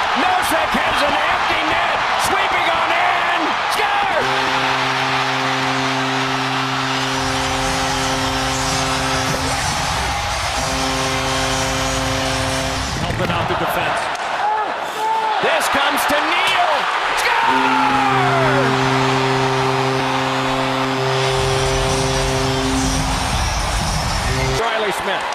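Hockey arena crowd cheering after a goal while the goal horn blows in long, steady blasts. The horn sounds from about four seconds in to about thirteen, with a short break near ten, and again from about seventeen seconds in to near the end.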